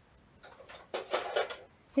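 Papers and craft items being handled on a cutting mat: a short stretch of rustling and light knocks about a second in.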